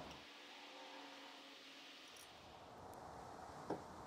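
Near silence: faint room tone, with one brief faint click near the end.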